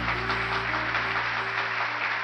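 The final chord of a tamburica band, with bass and drums, ringing out and fading, under applause.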